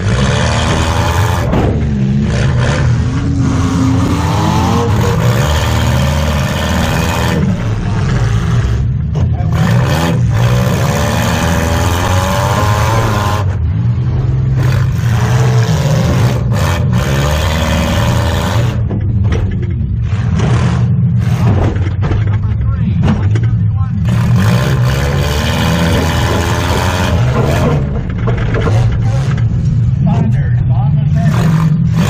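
Engine of a full-size demolition derby car heard loud inside its stripped cabin, its pitch rising and falling as the throttle is worked during the heat.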